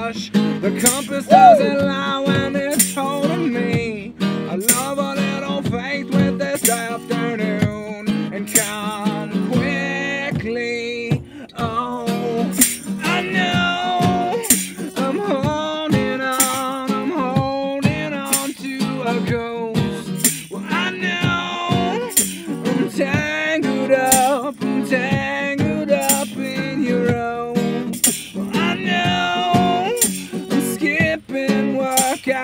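Live band music: an acoustic guitar strummed under a sung melody, with a tambourine striking a steady beat about once a second.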